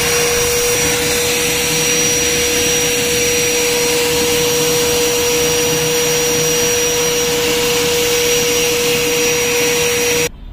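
Powertuff PT-35L 2000 W wet and dry vacuum cleaner running as a blower, its hose fitted to the outlet. The motor gives a loud, steady whine over rushing air.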